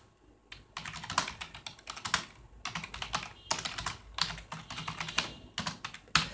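Typing on a computer keyboard: a quick, uneven run of keystrokes that starts after a brief pause, under a second in.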